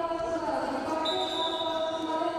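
Arena crowd voices with long, held tones that step in pitch, like chanting, and a high steady tone joining about a second in.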